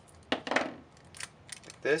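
A few short, sharp clicks and rustles from handling a roll of Kapton tape while a small piece is pulled off for taping down a thermocouple probe. A short word is spoken at the end.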